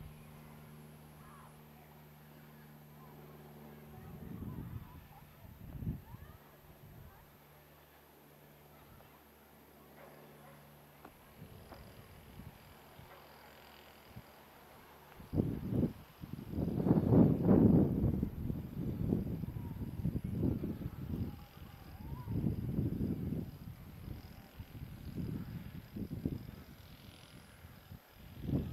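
Wind buffeting the microphone in irregular low gusts, loudest from about halfway through; before that, a faint steady low hum.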